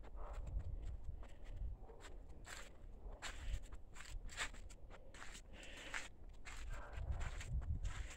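Footsteps on ground strewn with dead leaves and grass, an irregular series of soft crunching steps, over a low rumble.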